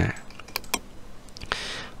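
A few separate clicks of computer keys, spaced out over the two seconds.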